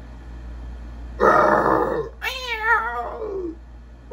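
Dinosaur roar: a harsh, rasping blast about a second in, then a wavering screech that falls in pitch and fades.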